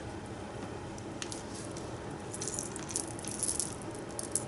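Loose beads clicking and rattling faintly as hands sift through them, with a quicker run of small clicks in the second half.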